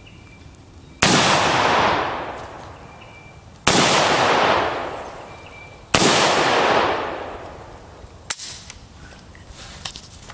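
Three gunshots, about two and a half seconds apart, each followed by a long fading echo. A few faint clicks follow near the end.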